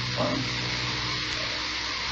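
Steady hiss with a low, steady hum underneath, the background noise of an old analogue lecture recording, broken only by a short spoken "um" near the start.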